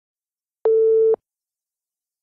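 A single steady electronic beep, about half a second long: the start tone that leads into a gymnastics floor-exercise music track.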